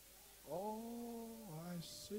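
A faint voice holding one long, steady vowel for about a second, then dropping to a lower note briefly before it stops.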